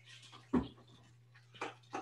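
A blender jar being set onto its motor base: a dull clunk about half a second in, then a short knock near the end.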